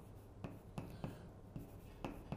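Chalk scratching on a blackboard while a square-root sign and expression are written, faint, with a few light taps of the chalk.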